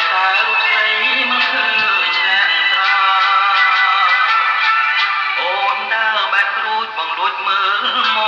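A male singer singing a Khmer song with instrumental accompaniment.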